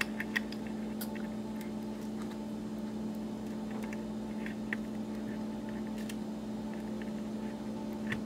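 A steady electrical hum, with a few faint clicks as small fan-lead connectors are handled and pushed onto a control board's header pins.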